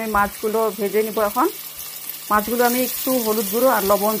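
Silver carp steaks frying in hot mustard oil in a wok: a sizzle that starts suddenly as the first steak goes into the oil and then carries on steadily. A woman's voice talks over it, louder than the sizzle.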